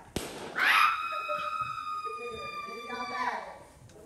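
A sharp click, then a high-pitched squeal held for about two and a half seconds, rising at its start and falling away at its end, with lower voices beneath it.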